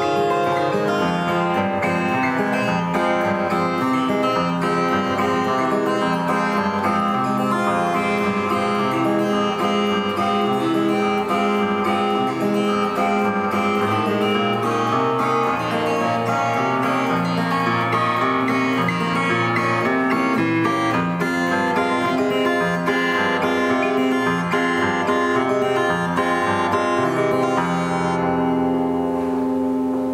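Steel-string acoustic guitar played fingerstyle with a capo: a melody picked over chord arpeggios. Near the end a chord is left ringing.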